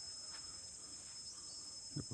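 Faint, steady, high-pitched chorus of insects chirring, with one thin unbroken tone running through it.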